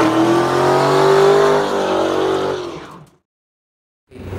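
Car engine held at high revs during a burnout, its pitch rising slightly and then easing, fading out about three seconds in.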